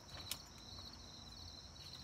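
Insects chirping in a steady high trill, with a faint click about a third of a second in as the school bus's entry door is pulled open.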